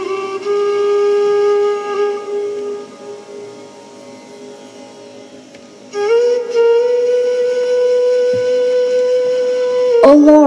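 A flute playing long held notes: a steady tone at first, a softer passage in the middle, then a slightly higher note that slides in about six seconds in and is held to the end.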